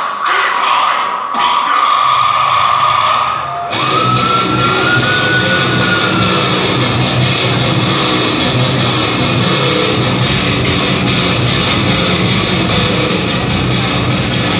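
Heavy metal band playing live through a PA: a held high note over loud stop-start bursts, then the full band with distorted electric guitar, bass and drums comes in about four seconds in. From about ten seconds the drums play fast, even strokes.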